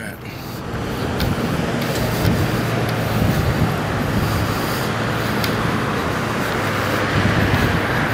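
Road traffic on a multi-lane street: a steady noise of car tyres and engines with a low hum, swelling about a second in and then holding.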